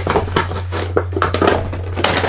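Cardboard box and paper packaging being pulled open and handled, a quick irregular run of crinkles, scrapes and small clicks. A steady low hum runs underneath.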